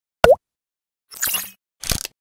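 Sound effects of an animated TV logo sting: a short pop whose pitch sweeps quickly upward, followed by two brief noisy bursts, one just after a second in and one near the end.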